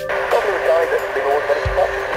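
Air traffic control radio transmission on an airband receiver: a voice buried in static hiss, too garbled to make out, opening at the start and cutting off just after the end. A steady whistle runs underneath, with a single low thump near the end.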